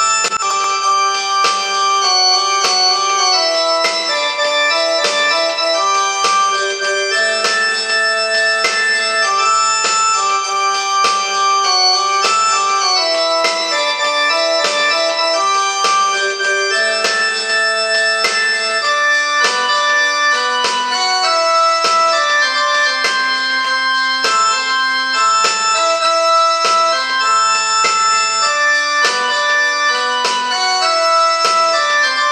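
Portable electronic keyboard playing a melody over chords, two-handed, with notes held steady rather than fading.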